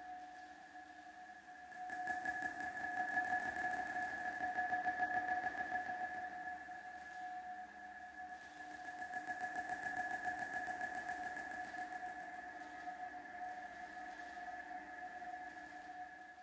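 Quiet ambient outro of an electronic dubstep track: a sustained synth drone holding two steady tones over a faint pulsing texture, swelling about two seconds in and again near the middle.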